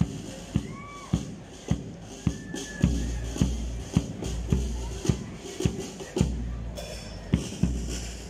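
Marching band playing a march: a bass drum beats steadily a little under two strokes a second, with low held notes joining in from about three seconds in.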